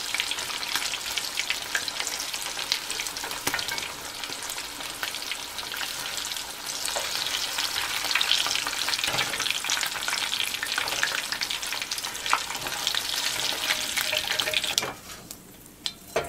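Pomfret fish pieces shallow-frying in hot oil in a non-stick pan, a dense steady sizzle with constant small crackles and pops, the fish fried to golden brown. The sizzling drops away about a second before the end.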